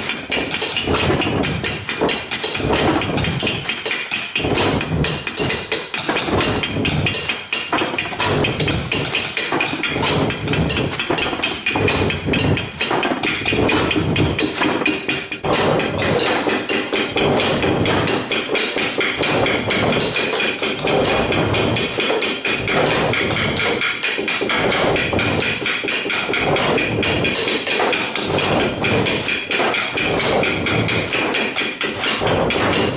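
A percussion ensemble of djembes, hand drums and other struck objects playing together: a dense, continuous clatter of quick hits.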